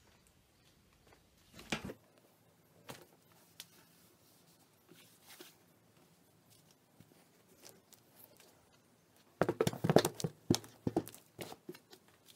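Handling noise from a fabric cover on a treadle sewing machine: a few scattered soft knocks, then a dense flurry of knocks and rubbing from about nine and a half seconds in as the cover is handled.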